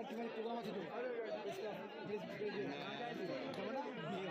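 Indistinct background chatter of several people talking at once, fairly faint, with no one voice standing out.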